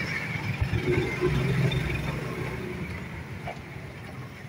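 Motorcycle engines running at low speed, growing quieter over the last couple of seconds.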